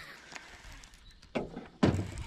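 Low background hush, then a dull thump in the second half and a sharper, louder knock near the end.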